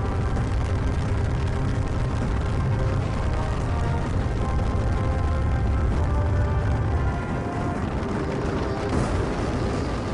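Firecrackers going off in a dense barrage, heard as a steady low rumble with crackle and no single bang standing out, under background music.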